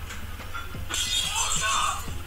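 Crockery shattering: a sudden noisy crash about a second in that carries on for about a second.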